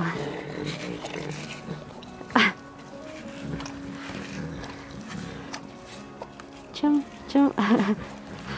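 Amur tigress eating a chunk of raw meat at the enclosure mesh, with one short loud sound about two and a half seconds in and a voice near the end.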